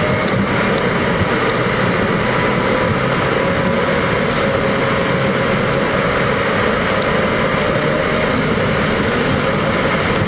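Car engine and road noise inside the moving car, picked up by the dashcam. It is a steady rush with a constant whine that drifts only slightly in pitch.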